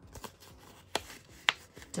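Paper banknotes being handled and slid into a clear plastic cash envelope: faint rustling with a few sharp clicks, the loudest about one and a half seconds in.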